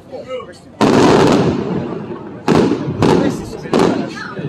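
Aerial firework shells bursting: a loud bang about a second in, then three more in quick succession in the second half, each trailing off.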